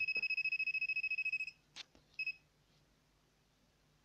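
Aurora electromagnetic radiation detector pen beeping with a fast-pulsing high tone, set off by the electromagnetic field of a plugged-in phone charger. The tone stops about one and a half seconds in, then comes a click and one short beep a little after two seconds.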